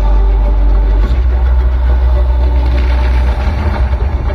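Loud, deep bass rumble from a light show's soundtrack over outdoor loudspeakers, shifting in pitch about a second in and breaking up near the end.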